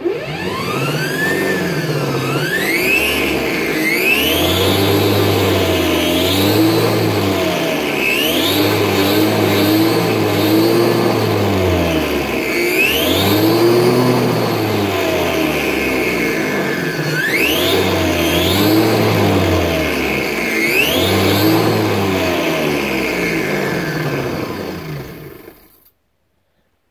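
Spark-ignition petrol engine revved again and again, each rev rising quickly in pitch and sinking back more slowly toward idle. The sound dies away near the end.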